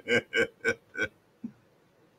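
A man laughing: four quick laugh pulses in the first second, fading to one faint breath about a second and a half in.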